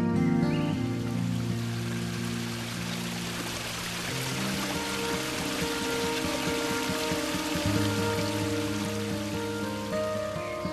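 Water pouring from a stone fountain's spout and splashing into its basin. It fades in just after the start and fades out near the end, over soft background music of held notes.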